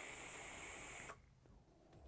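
A long draw on an electronic cigarette (vape mod): a steady airy hiss with a high whistling tone as air is pulled through the atomizer. It cuts off sharply about a second in.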